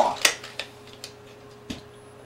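Quiet room tone with a steady electrical hum, broken by a few faint clicks and a soft thump a little before the end.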